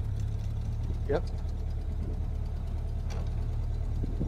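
1931 Ford Model A's four-cylinder flathead engine running steadily at low revs with a low rumble, heard from the open roadster's seat.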